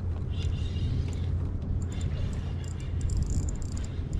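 Fishing reel being cranked to bring in a freshly hooked fish, with quick high clicking from about two seconds in, over a steady low rumble.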